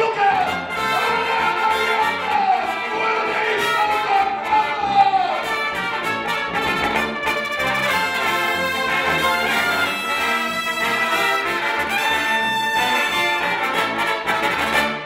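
Live brass band playing, with trombones, tuba and horns sounding together over a moving bass line.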